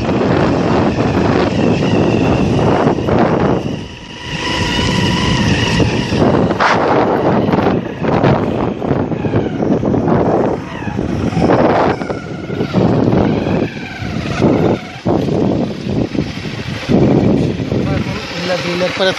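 Motorcycle on the move, its engine mixed with heavy wind rumble on the microphone, loud and rough throughout with a brief dip about four seconds in.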